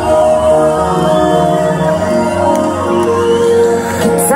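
Live pop band music through a concert PA: sustained keyboard chords with bass and drums under a female lead voice singing.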